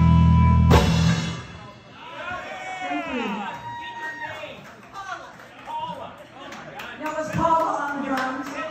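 Live rock band ending a song: a loud sustained chord with heavy bass, cut off by a final hit about a second in. It rings out, followed by quieter gliding tones and scattered voices.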